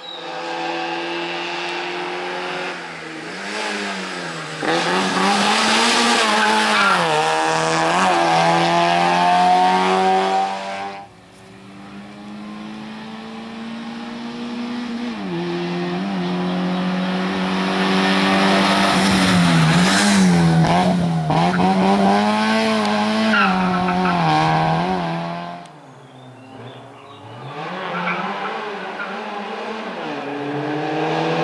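Small race car's engine revving hard, its pitch climbing and dropping again and again as the driver accelerates, shifts and brakes between slalom cones. The sound falls away briefly twice, about eleven seconds in and again near the end.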